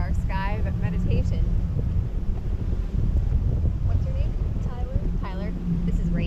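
Wind rumbling steadily on the microphone of a parasail's tow-bar camera. High-pitched voices of the riders call out briefly near the start and again about five seconds in.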